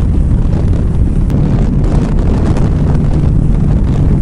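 Loud, steady wind rush on the microphone over a motorcycle's engine and tyre noise at highway speed.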